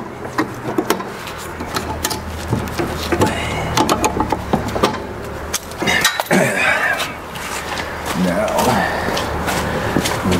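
Metal clicks and clinks of pliers working the spring-loaded retaining clips off a steel snow plow wing mount, over a steady low engine hum.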